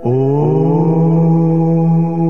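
A voice begins a long chanted "Om" at the start, sliding up in pitch and then holding one steady note over a sustained meditative drone.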